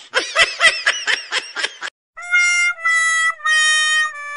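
A high-pitched, pitch-shifted cartoon voice laughing in quick repeated laughs for about two seconds. After a short gap, an electronic outro tune of three held notes, each at a new pitch.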